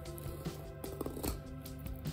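Quiet background music holding sustained low notes, with a few faint scratches from a filleting knife tip scoring along fish skin on a plastic cutting board.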